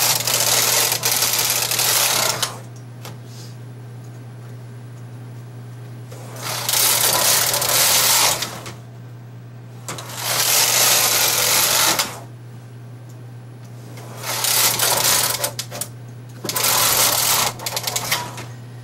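Carriage of a bulky-gauge double-bed knitting machine (knitter and ribber) being pushed across the needle beds to knit rows, a rattling, sliding run of about two seconds for each row. Five passes, with short pauses between them as the direction changes, over a steady low hum.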